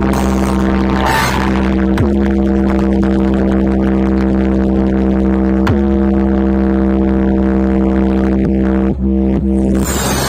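Music played loud through a large DJ box speaker stack during a sound check: one held, droning bass note with strong overtones, crossed by a few short sweeps, cutting off suddenly at the end.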